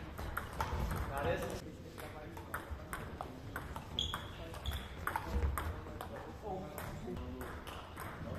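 Table tennis rallies: the celluloid-type ball clicks off bats and table in quick back-and-forth strokes, echoing in a large sports hall.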